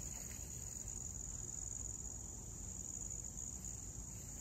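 Field insects trilling in one steady, high-pitched chorus, with a faint low rumble underneath.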